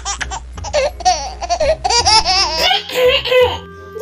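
People laughing, high-pitched, over light background music whose low beat stops a little past halfway.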